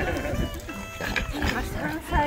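Pugs making vocal noises, under indistinct voices and light background music.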